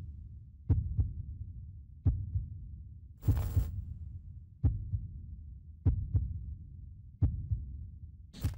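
Heartbeat sound effect: six low double thumps (lub-dub), one about every 1.3 seconds. A brief hiss comes about three seconds in.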